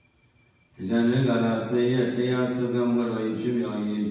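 A Buddhist monk's voice chanting in a drawn-out, intoning monotone, starting about a second in after a brief pause.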